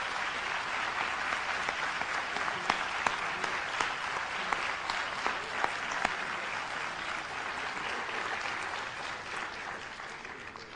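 Large audience applauding steadily, with a few sharper individual claps standing out, starting to die down near the end.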